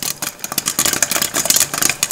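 Popcorn popping: a fast, dense crackle of many sharp pops a second, bright and high-pitched.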